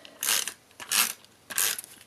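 Snail adhesive tape runner drawn across paper in three short rasping strokes about half a second apart.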